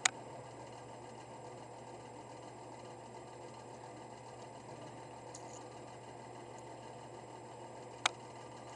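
Room tone: a faint steady hiss with a low hum, broken by a sharp click at the start and another at the end.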